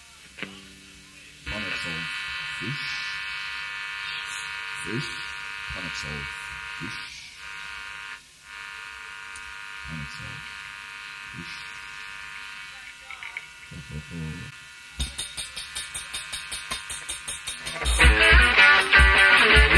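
A steady electric buzz on a live soundboard recording, filling the gap between songs, with faint muffled voices beneath it. About fifteen seconds in, a fast regular pulse starts, about three to four beats a second, leading into the next song.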